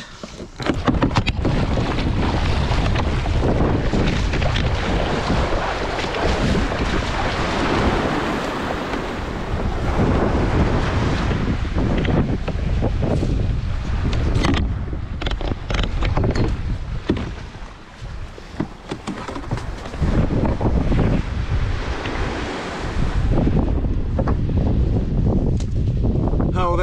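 Wind buffeting the microphone over the wash of sea water around a kayak at sea, a loud, unsteady rumble that eases briefly a little past halfway.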